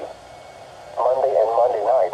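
NOAA Weather Radio broadcast voice reading the forecast through a Midland weather alert radio's small speaker, thin and narrow-sounding. It starts about a second in, after a pause filled with faint steady radio hiss.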